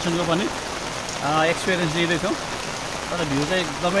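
Steady monsoon rain falling, an even hiss, with a voice over it in short stretches.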